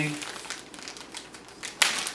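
Clear plastic packaging bag crinkling as hands pull it open, with one sharp, loud crackle near the end.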